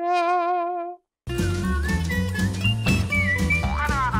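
TV show bumper jingle: a single held note with a wavering vibrato for about a second, a brief silence, then a lively full-band tune with bass, melody and percussion.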